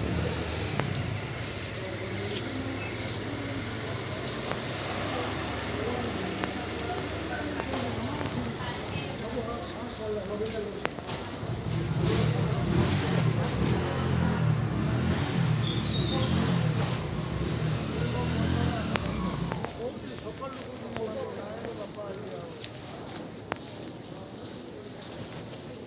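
Indistinct voices of people talking nearby over the low hum of a motor vehicle engine, which grows louder about twelve seconds in and drops away about eight seconds later.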